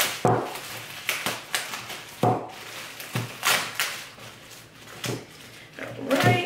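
A package being handled and opened by hand: a string of separate crackles and knocks, about ten over six seconds, growing fainter in the second half.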